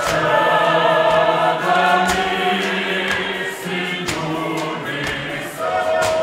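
A church choir of men singing together in a sustained chant, unaccompanied, with a few short thumps along the way.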